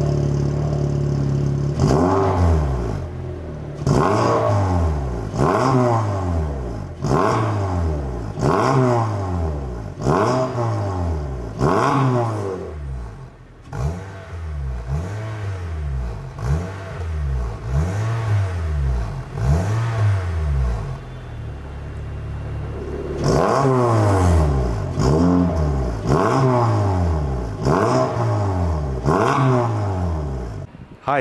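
Honda City Hatchback with a Max Racing aftermarket exhaust and intake, revved while standing still: a steady idle, then a long run of throttle blips about every one and a half to two seconds, each rising quickly in pitch and falling back. A little past two-thirds through it settles to idle for a couple of seconds before the blips start again.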